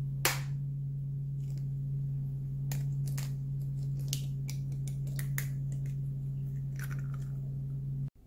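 Raw eggs cracked against a plastic cup and broken open by hand: a series of short sharp taps and shell cracks, the sharpest just after the start, over a steady low hum.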